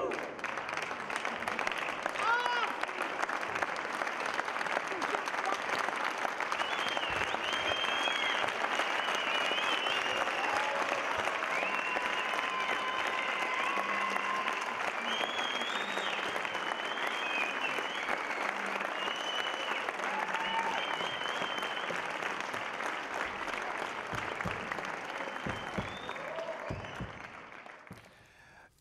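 Audience applauding steadily, with scattered high-pitched cheers above the clapping. It fades out in the last couple of seconds.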